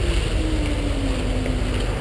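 Wind buffeting the microphone over the low drone of truck engines in the lot, with a faint engine tone sliding slowly down in pitch.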